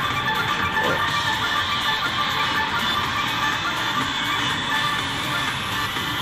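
Electronic slot machine music during a Crazy Money Gold bonus wheel feature, playing steadily with several held tones.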